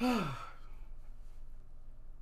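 A man's voiced sigh, falling in pitch and fading out within about half a second.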